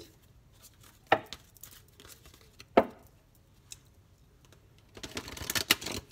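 A deck of oracle cards being handled: two sharp taps of cards about a second and a half apart, then near the end about a second of rapid crackling as the cards are shuffled.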